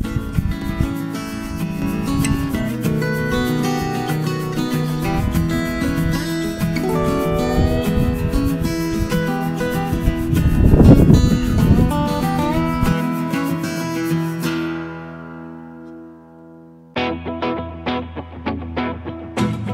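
Background music on acoustic guitar, plucked and strummed. A low rumble swells and fades about ten to twelve seconds in, and the music dies away soon after before a new plucked-guitar passage starts near the end.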